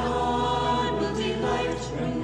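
A choir singing a hymn to sustained accompaniment, the words on screen being 'yes, God will delight when we are creators of justice'. The held low notes underneath change about one and a half seconds in.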